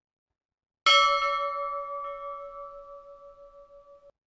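A single bell struck once about a second in, ringing with a clear tone that slowly fades with a slight waver. It is rung at Benediction as the monstrance is raised in blessing.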